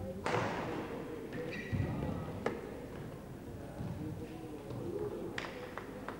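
Footsteps thudding on a badminton court in a large echoing sports hall, with a loud sharp knock just after the start and a couple of lighter clicks later.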